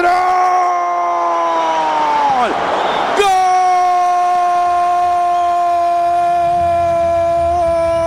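A radio football commentator's drawn-out goal cry, a long "gooool" shouted on one steady pitch. The first note falls off after about two and a half seconds, and after a short breath the cry is taken up again and held to near the end.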